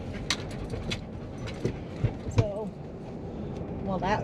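Steady road noise inside a moving car's cabin, with a handful of light clicks and knocks as a Siberian husky in the back seat moves about and lies down.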